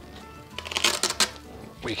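Crisp rustling and handling noise from the lightbox's front flap being moved, a short cluster of rustles lasting under a second, starting about half a second in.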